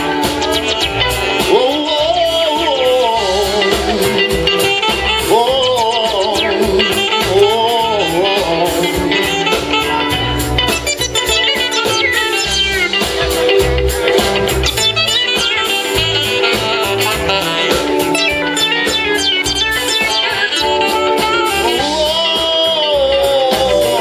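A live band playing a song: a lead line of bending, sliding notes over held chords, with bass and drums keeping a steady pulse.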